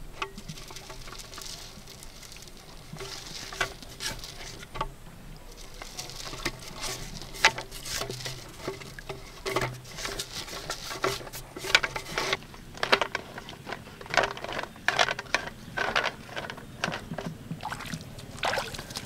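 Crumbly bait falling and pattering into a plastic PVC pipe, with a hand scraping and tapping inside the pipe: many irregular small taps and rustles.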